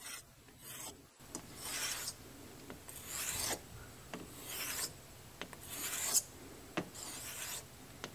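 Detroit straight razor being stropped on a hanging strop: five hissing swishes as the blade is drawn along it, with a light click between strokes.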